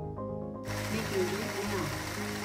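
The small 12-volt pumps of a homemade robot bartender start up about two-thirds of a second in and run with a steady mechanical noise, pumping spirits into a glass.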